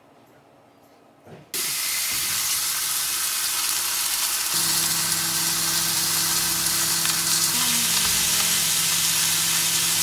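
Beef steaks frying in butter in a hot frying pan, a loud steady sizzle that starts suddenly about a second and a half in. A low steady hum joins it about halfway through.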